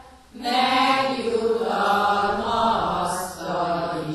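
A group of voices chanting a prayer, with long held notes, starting about half a second in after a brief pause.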